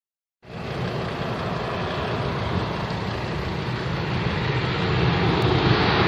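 A Ryanair Boeing 737 on final approach, its jet engine noise a steady rushing sound that starts about half a second in and grows gradually louder as the airliner nears overhead.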